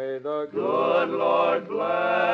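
Male barbershop quartet singing unaccompanied in close four-part harmony: a couple of short notes, then a long held chord, with the next phrase starting near the end.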